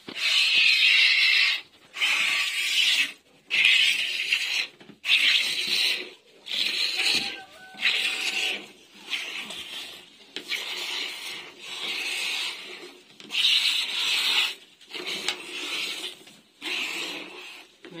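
Goat being milked by hand: thin streams of milk squirting into a near-empty plastic bucket, a hissing spray with each squeeze, about once a second with short gaps between.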